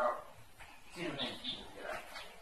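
A voice in two short bursts, one at the start and one about a second in, with pauses between.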